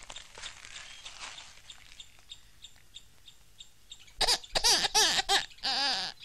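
Faint background with small, evenly spaced high chirps, then about four seconds in a run of loud, short, high-pitched bursts of laughter.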